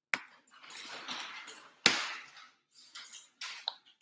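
Tape seal being peeled off a plastic toy capsule: a rough tearing rasp lasting about a second, twice, each starting with a sharp plastic click, then a few smaller scratching sounds of fingers on the plastic.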